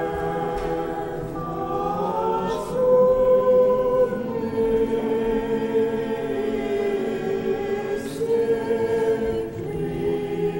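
Church choir singing a slow liturgical hymn unaccompanied, in long held notes, swelling louder about three seconds in.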